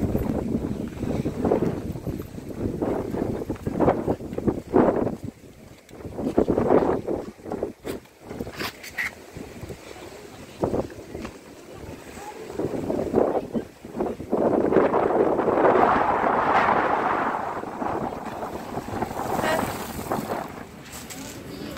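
Wind buffeting the microphone over the sound of sea waves. It comes in irregular gusts at first, then a steady rush lasts several seconds near the end.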